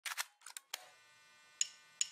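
A series of short, sharp camera shutter clicks: several in quick succession in the first second, then one more near the end.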